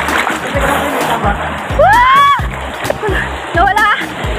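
Water splashing and churning around the rider as she lands in the pool at the bottom of a waterslide, over background music with a steady beat. About two seconds in comes a short rising-and-falling vocal call.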